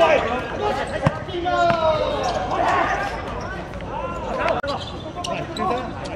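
Shouting voices on a football pitch, with a few sharp thuds of the ball being kicked on the hard court, the clearest about a second in.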